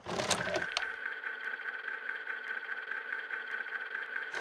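A synthesized drone of several steady held tones with a faint crackle, starting suddenly out of silence, with a low rumble only in its first second.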